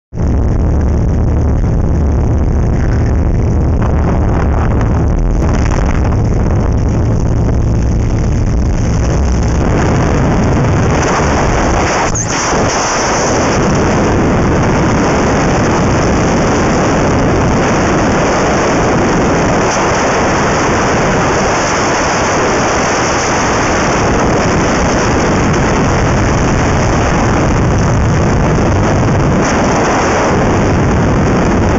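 Jump plane's engine droning steadily in the cabin, then about twelve seconds in the sound changes to loud, steady wind rushing over the camera microphone as the wingsuit flies in freefall.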